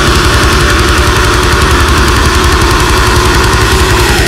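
Death metal band playing: very fast, even double-bass kick-drum strokes under a sustained, distorted guitar chord.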